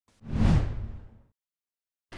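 A news channel logo-sting whoosh: one deep swish that swells in quickly and dies away over about a second.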